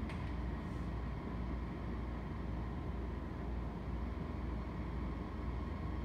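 Steady low room hum with a faint thin tone in it. Faint strokes of a felt-tip marker on a whiteboard can be heard as numbers are written.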